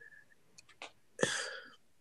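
A person's short, sharp burst of breath a little over a second in, fading quickly, after a few faint mouth clicks.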